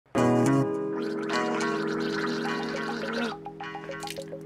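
A man gargling a mouthful of water while voicing held, tune-like notes through it. It breaks into short bubbling notes near the end.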